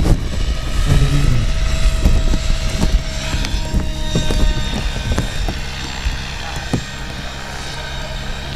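Radio-controlled 3D aerobatic helicopter in flight: a steady buzz from its motor and rotor blades, with scattered short clicks through it. The sound grows quieter from about five seconds in.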